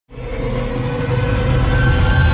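Cinematic logo-intro sound effect: a deep rumble under a bright wash of noise with held tones, starting abruptly and swelling slightly.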